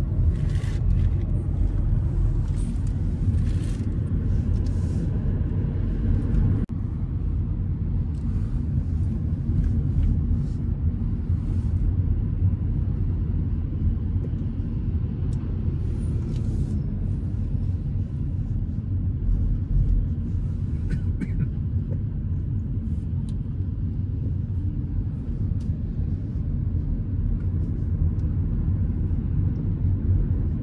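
Road noise inside a moving car's cabin: a steady low rumble of engine and tyres, with a few brief clicks and rattles.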